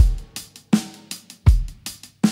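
Drum-kit break in a children's song: a steady beat of bass drum hits about every three-quarters of a second with lighter drum and hi-hat hits between, the melody and singing dropped out.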